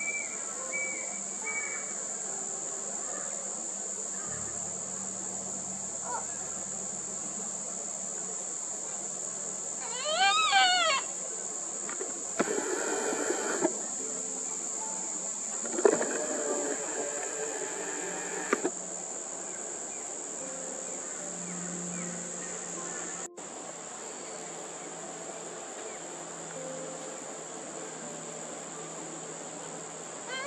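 Yellow-tailed black cockatoo chick begging for its parent's attention. It gives a loud, wavering wailing cry about ten seconds in, then harsher, raspy calls a few seconds later. A steady high-pitched insect drone runs underneath.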